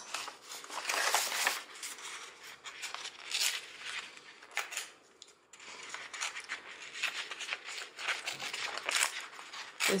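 Tea-dyed paper being torn by hand along its edge in short rips and rustles, with a brief pause about halfway through.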